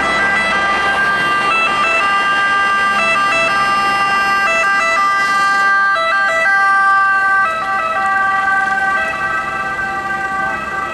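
Fiat Ducato ambulance siren sounding continuously, its tones stepping back and forth between two pitches. It gets a little quieter after about seven and a half seconds as the ambulance pulls away.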